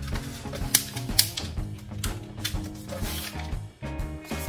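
Background music with a steady beat, over crisp clicks and rustles of origami paper being folded and creased by hand, the sharpest two about a second in.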